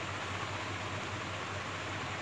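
Steady background hiss with a faint low hum, no distinct events: room noise between spoken sentences.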